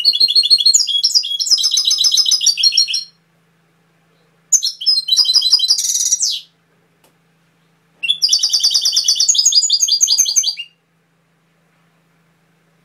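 European goldfinch singing in three bursts of fast, repeated high notes, each two to three seconds long, with short silent pauses between.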